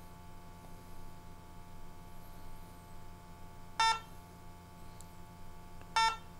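SENSIT GOLD G2 gas detector giving two short electronic beeps about two seconds apart during its warm-up sequence, over a faint low hum.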